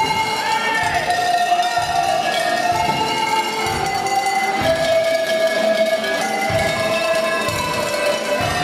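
Tuned cowbells played as a melody by two performers at tables on stage, each note ringing on, with a steady low beat underneath.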